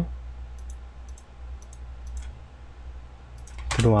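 Faint, scattered clicks from computer mouse and keyboard use over a steady low hum. A man's voice comes in near the end.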